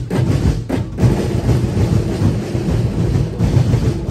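A festival drum ensemble playing a dense, continuous beat, with deep bass drums underneath.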